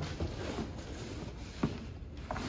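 Faint rustling and handling of packing material as a push-pull control cable is pulled out of a cardboard box, with one sharp click near the end.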